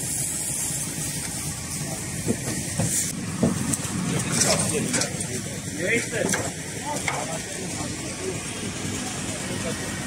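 Indistinct firefighters' voices calling over a steady hiss of noise, with a few brief louder sounds between about three and seven seconds in.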